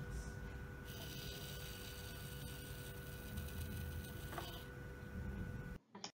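Small motor-driven rotary-arm quench test rig running faintly: a steady hum over a low rumble, with a hiss-like whir from about one second in until nearly five seconds. The sound cuts off suddenly just before the end.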